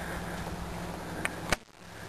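Steady outdoor background noise, a low hum under a light hiss, with two short clicks about a second and more in, after which it briefly drops quieter.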